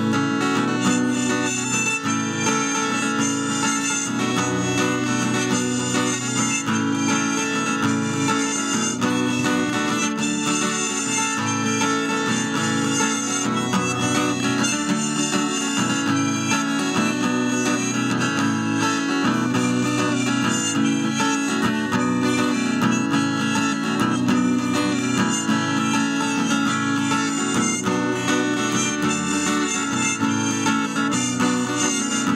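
Harmonica playing a melody over a steel-string acoustic guitar picked with a plectrum: an instrumental passage of an Amazigh song.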